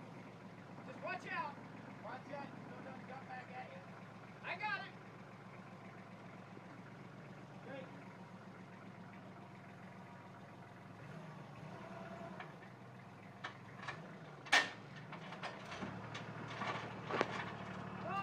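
Compact tractor engine running steadily while its front loader handles a plow, the engine note wavering about two-thirds of the way through. A few sharp metal knocks come near the end, the loudest first.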